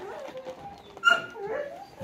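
A dog whining softly, with a short, louder high-pitched whine about a second in.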